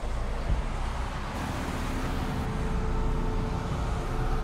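Steady road traffic noise: the even hiss and rumble of cars and vans moving along a busy road.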